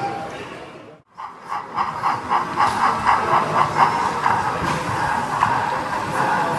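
HO scale model steam locomotive running along the track, with a steady hiss and a regular beat about four to five times a second. The sound starts after a brief fade to near silence about a second in.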